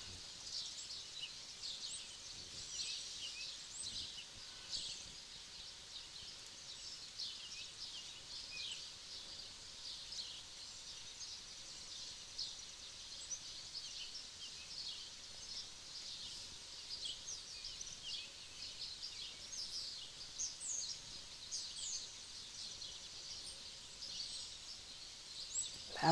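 Small birds singing and chirping, many short high notes overlapping throughout, fairly faint over a quiet outdoor background.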